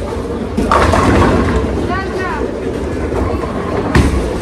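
Bowling alley din: a steady low rumble of balls rolling down the lanes under background voices. A louder burst of noise comes about a second in, a short rising-and-falling voice call about two seconds in, and a sharp knock at the very end.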